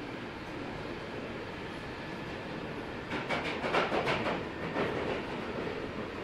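London Underground Northern line 1995 stock train running through the tunnel, heard from inside the carriage: a steady rumble, with a louder burst of rapid clattering about halfway through.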